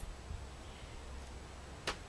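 A pause with a low steady hum and faint hiss, broken by one sharp click near the end.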